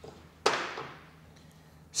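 A small steel hammer gives one sharp knock on the centre post cup, seating it in the fork of a Heiniger shearing handpiece on a wooden block. The knock comes about half a second in and rings away over about half a second.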